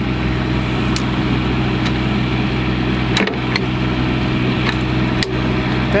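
Engine idling with a steady hum, and a few light metal clicks as a lift gate's safety pin is worked loose by hand.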